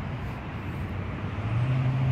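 Steady outdoor background noise, with a steady low machine hum coming in about a second and a half in.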